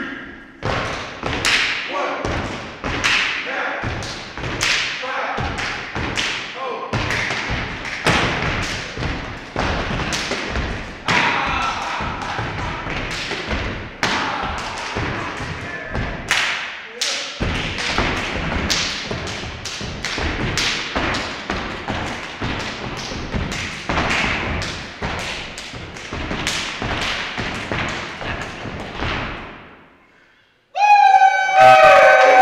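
A step team stomping, clapping and slapping their bodies in fast, tight rhythm on a hall floor, several hits a second, fading out near the end.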